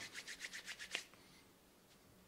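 A quick run of about nine faint, short ticks or scrapes in the first second.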